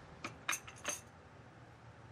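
A few light clinks of small hard objects in the first second.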